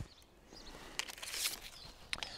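Faint handling of arrows and bow: a few light clicks and a short rustle about a second in and again near the end, as the next arrow is brought to the string of a Turkish bow.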